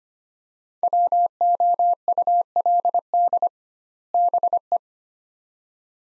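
Morse code sent as a single steady beeping tone at 25 words per minute: two words with a short pause between them, the Morse repeat of the spoken words 'would be'.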